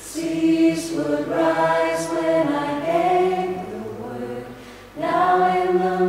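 Mixed a cappella choir singing held, swelling chords with no instruments, in phrases that fade and come back in strongly about five seconds in.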